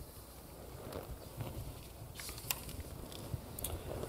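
Quiet room with faint rustles and a few soft clicks as a large hardback picture book is lowered and its pages are turned.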